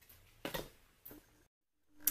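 An eyeshadow palette being closed and handled back into its cardboard cover: a sharp tap about half a second in and a softer one about a second in.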